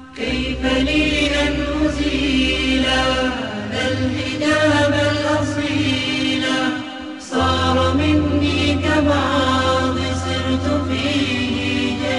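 Arabic nasheed: voices singing a slow melodic line over a steady low humming drone. There is a short break between phrases about seven seconds in.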